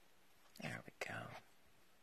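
A woman's voice, quiet and under her breath: two short whispered or muttered bits, about half a second and a second in, over quiet room tone.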